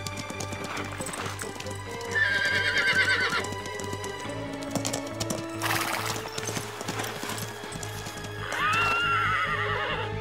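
Horse sound effects over background music: hooves clip-clopping at a run, with two whinnies, one about two seconds in and one near the end.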